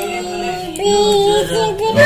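A voice singing a Hindi film song in long held notes that slide from one pitch to the next.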